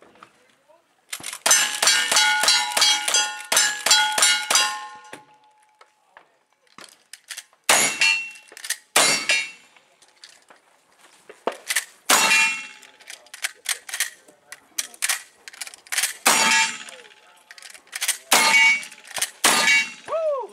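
Gunshots in a cowboy action shooting stage, each answered by the ring of hit steel targets: a fast string of shots from about a second in to about five seconds, then single shots with pauses of a second or more between them.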